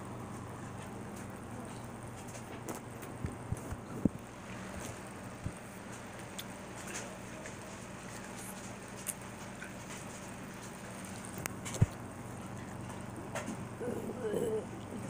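Steady low room hum with a few scattered faint clicks and knocks, the sharpest about four seconds in and again near the twelve-second mark.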